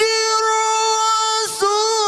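A male qari's Quran recitation, amplified through a handheld microphone: one long, high-pitched held note, a brief breath about one and a half seconds in, then the next note begins with a slight waver.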